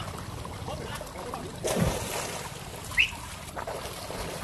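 Swimming-pool water sloshing and splashing around swimmers, with one louder splash a little before two seconds in. A brief high-pitched chirp sounds about three seconds in.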